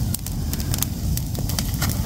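Open wood fire of dry branches and brush crackling, with many irregular sharp pops over a low steady rumble.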